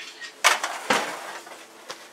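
Two sharp metal clanks about half a second apart as a metal baking sheet is handled at the oven and stovetop, with a smaller knock near the end.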